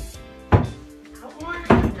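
A painted wooden panel knocks twice against the cabinetry as it is pushed into the corner to test its fit. The first knock comes about half a second in, the louder one near the end, over background music.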